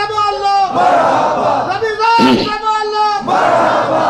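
A man's voice through a microphone chanting long held notes, alternating with a crowd shouting together in response.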